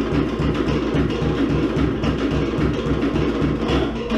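Cook Islands drum band playing for an ura dance: wooden slit drums (pate) rattling over a deep bass drum in a fast, even rhythm.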